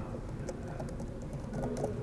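A few scattered keystrokes on a laptop keyboard, faint against the hum of a meeting room.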